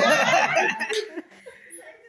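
Several women laughing together, loudest in the first second and then trailing off.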